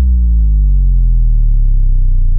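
A loud, deep synthesizer bass note from an intro logo sting, held and sinking slowly in pitch.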